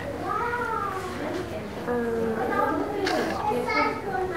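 A young child's high-pitched voice, hesitant and drawn out, with an "um" about two seconds in.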